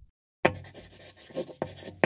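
Scratchy, rubbing strokes of something dragged across a surface, in quick irregular passes, starting abruptly about half a second in after a moment of silence.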